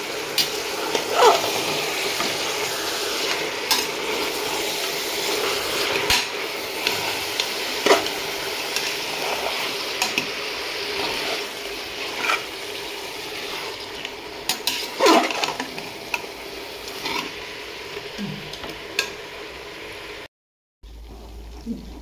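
Chicken, onions and herbs sizzling in hot oil in a large metal pot while a perforated steel ladle stirs them, scraping and clinking against the pot at irregular moments. The sound drops out for about half a second near the end.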